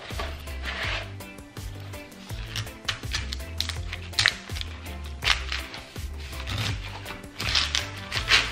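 Large kitchen knife cutting through a whole pineapple's tough rind and core near the crown on a plastic cutting board: a run of crunching cuts and sharp knocks, over background music with a steady bass line.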